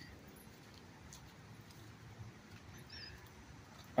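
Faint outdoor background noise in a riverside park, with one brief high-pitched chirp about three seconds in.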